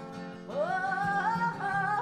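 Male voice singing a soul ballad over steady instrumental accompaniment, sliding up into a long held note about half a second in.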